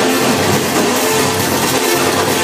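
Loud live church band music during a gospel praise break, with drums and instruments playing continuously.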